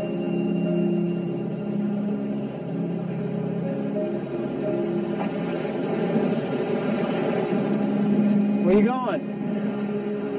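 Background film score with long held notes, and a voice calling out once near the end.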